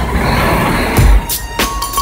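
Busy bus-station noise with a low rumble, then electronic background music with sharp drum hits comes in about a second in.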